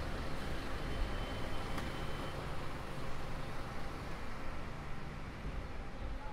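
Steady city street traffic noise: cars and buses running on the road alongside, with a faint thin high tone lasting about a second and a half early on.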